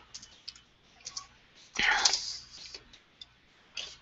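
Scattered keystrokes on a computer keyboard as a line of Java code is finished and a new line is started. About two seconds in there is a brief, louder rush of noise.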